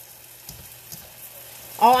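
Cabbage sizzling steadily in a hot pan as it is stir-fried and turned with a spatula.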